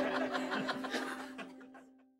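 Laughter and chuckling over a held music note, fading out steadily toward the end.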